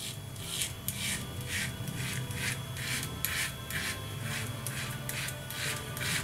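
Safety razor scraping stubble through shaving lather in short strokes, about two or three a second.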